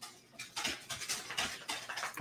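A dog moving about close by: a quick, irregular run of light clicks and scuffles starting about a third of a second in.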